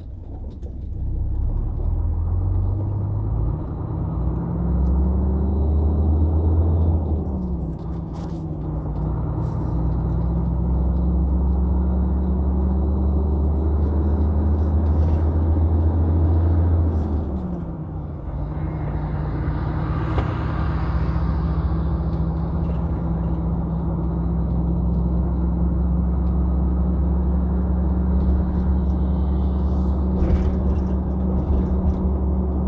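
Heavy truck's diesel engine heard from inside the cab while driving: the engine note climbs, drops sharply about seven seconds in and again just after seventeen seconds as the gears change, then runs steadily. A brief rushing hiss comes about twenty seconds in.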